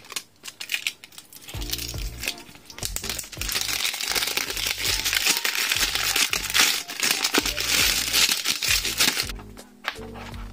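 Clear plastic wrap being peeled off a cardboard box: continuous crinkling with sharp crackles. Background music with low held notes comes in about one and a half seconds in.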